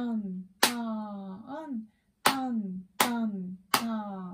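A woman clapping a quarter-note and half-note rhythm and chanting "tan" on each clap, with the claps about three quarters of a second apart. On each half note the syllable is drawn out as "ta-an" and fills the gap before the next clap.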